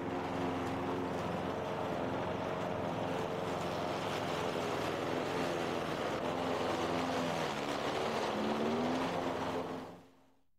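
Small gasoline engine of a walk-behind rotary lawn mower running while cutting tall, overgrown grass, with a steady hum. Its pitch sags briefly and recovers near the end, and the sound fades out at the very end.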